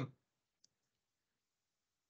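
Near silence with one faint, brief click a little over half a second in.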